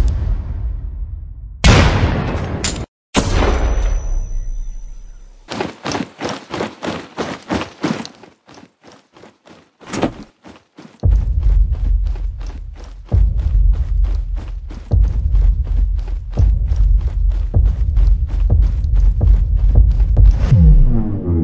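Animated combat sound effects. Two grenade blasts come in the first few seconds, the second followed by a thin high ringing. Then come long strings of rapid automatic rifle fire with heavy low thumps, broken by a short lull about halfway through.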